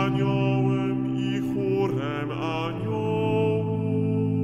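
Choir singing a chanted Catholic prayer in slow, held chords, the low voices moving to a new chord about three seconds in.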